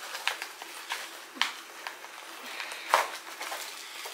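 Packaging being rummaged through by hand while a box is unpacked: a run of irregular rustles and light clicks, with two sharper clicks about a second and a half in and again near three seconds.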